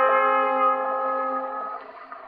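Orchestral accompaniment of an early disc recording holding one sustained chord in the instrumental introduction, fading toward the end. The sound is thin, with no deep bass and no high treble.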